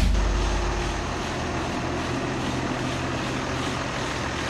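A vehicle engine running steadily, a low drone with road and wind noise. The loud music tail fades away over the first second.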